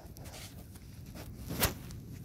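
Faint rustling noise, with one sharp click a little past halfway.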